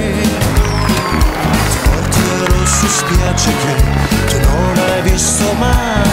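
Upbeat background music with a steady, driving beat and a melody line.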